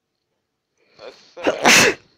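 A man sneezing once: a short build-up about a second in, then one loud burst that stops just before the end.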